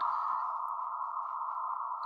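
Steady, narrow-band hiss from a VHF radio receiver's audio on a live meteor radio-echo stream, the kind of sound described as "like you're in a space capsule". It is the receiver's background noise, with no meteor echo ping standing out.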